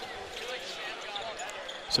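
Low arena background during live college basketball play: faint crowd murmur and court sounds, including a basketball bouncing, with a sharp click near the end.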